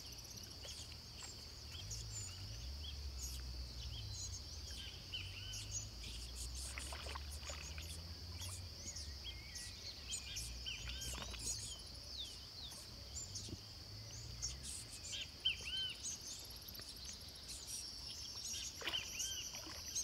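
Outdoor ambience: a steady high-pitched insect drone with many short bird chirps scattered through it, over a faint low rumble.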